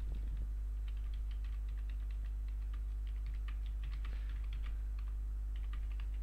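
Typing on a computer keyboard: a run of quick, irregular key clicks as a sentence is typed. A steady low electrical hum runs underneath.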